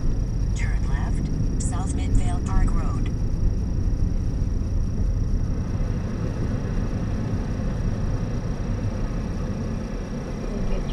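Car driving slowly with a steady low engine and road rumble picked up by a camera mounted outside the car. A few brief high-pitched sounds come in the first three seconds.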